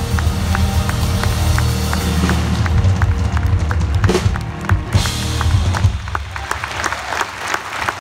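Live pop-rock band playing through a PA: sustained bass and guitar chords over drums, with a steady tick about three times a second and two louder crashes about four and five seconds in.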